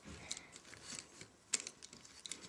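Soft plastic clicks and small rattles of a Lego Bionicle action figure's joints and parts being handled and snapped back into place, with one sharper click about a second and a half in.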